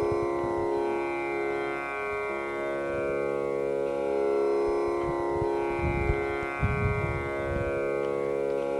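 Electronic tanpura drone sounding on alone after the singing has stopped: a steady held chord whose bright overtones slowly swell and shift in the manner of plucked tanpura strings. A few soft low bumps come about six to seven seconds in.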